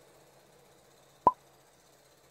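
A single short, sharp pop about a second in, over near silence: an edited-in pop sound effect that comes with an emoji graphic appearing on screen.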